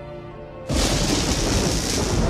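Soft music, then, about two-thirds of a second in, a sudden loud crash of thunder that breaks into a heavy downpour and keeps going.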